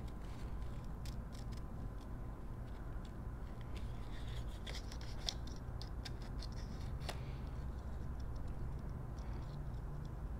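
Small craft scissors snipping through patterned paper in many short, irregular cuts, fussy cutting around printed flowers.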